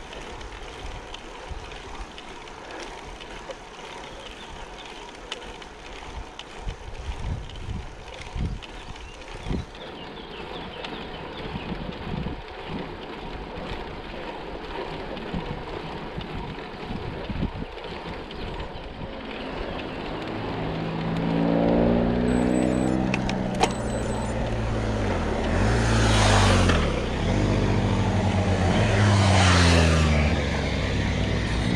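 Steady wind and road noise on the camera microphone of a slow-climbing road bike, with a few low buffeting thumps. From about twenty seconds in, motorcycles approach and pass; their engines rise and fall in pitch as they go by, loudest near the end.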